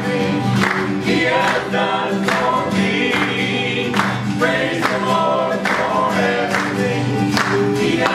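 Live gospel song: a man and a woman singing together over strummed acoustic guitar, with hand claps on the beat.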